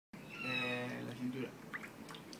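A man's voice holding a single low sung tone for about a second, with a few high overtones ringing out clearly above it: harmonic (overtone) chanting. The tone breaks off about halfway through, followed by a couple of faint clicks.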